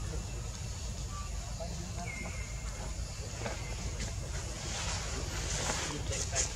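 Outdoor background noise: a steady low rumble with faint distant voices, and a short high whistle-like tone about two seconds in.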